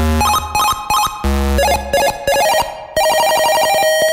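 Slowed-down, reverb-soaked 1-bit PC speaker tune: buzzy square-wave beeps in a stepping melody, with two low bass notes near the start and about a second in. About three seconds in, it turns into an unbroken run of quick notes.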